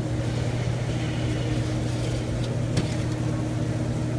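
Steady low machine hum, even throughout, with a couple of faint light clicks around the middle.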